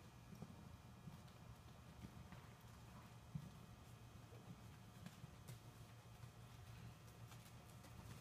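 Faint, muffled hoofbeats of a horse trotting on soft dirt arena footing, over a low steady hum.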